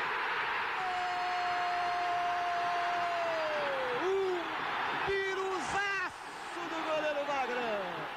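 A football commentator's long drawn-out goal cry, held for about three seconds and falling away at the end, over stadium crowd noise. He then carries on in excited commentary.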